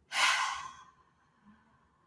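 A woman's single breathy sigh, an unvoiced rush of breath that fades out within about a second.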